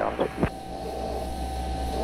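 Steady low hum and hiss of SpaceShipOne's cockpit audio, with a faint constant high tone. The rocket motor has already been shut down, so no motor is heard.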